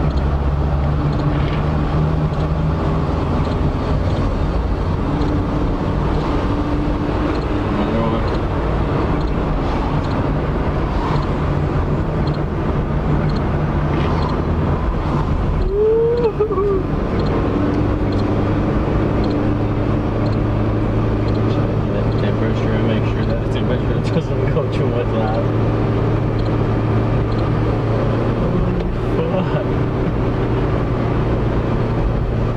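Car engine and road noise heard from inside the cabin while driving, a steady low hum whose pitch shifts now and then with engine speed. There is a brief break about halfway through.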